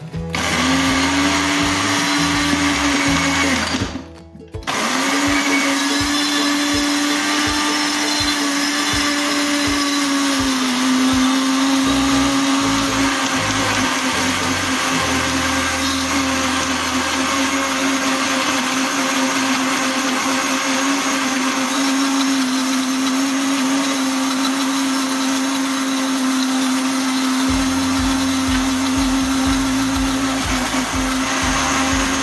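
Countertop blender motor running at a steady pitch, blending parsley, garlic and olive oil into a herb oil. It stops for a moment about four seconds in, then starts again and runs on steadily.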